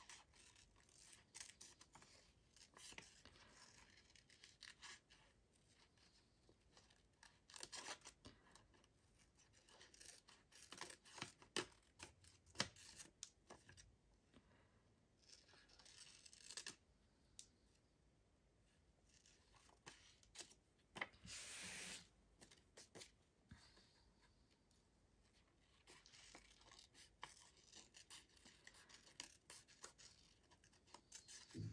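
Small scissors faintly snipping paper in short, scattered cuts while fussy-cutting around a printed image, with the paper rustling now and then, once louder for under a second about two-thirds of the way through.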